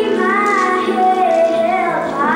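A young boy singing a ballad into a microphone, his voice bending and gliding between sustained notes, over steady held accompaniment chords.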